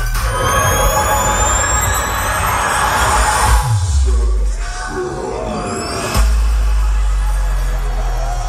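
Live dubstep set blasting over a festival stage sound system, heard from in the crowd. Rising sweeps build in the first two seconds, a deep bass note falls in pitch about three and a half seconds in, and heavy bass comes back hard a little after six seconds.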